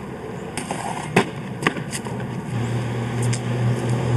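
A few sharp taps of shoes on concrete, then a soap shoe's plastic grind plate sliding along a metal stair handrail, heard as a steady low drone from about halfway through.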